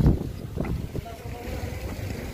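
Wind buffeting the microphone: a low rumble with a loud gust-like thump right at the start, then settling to a steadier low rumble, with faint voices behind.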